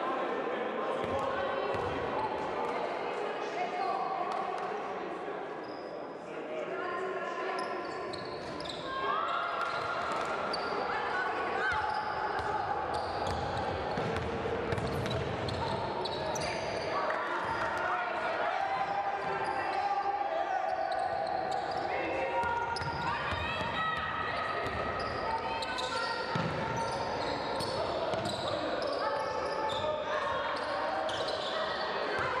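Sound of a women's basketball game in a large hall: the ball bouncing on the hardwood court amid voices calling out on and around the court.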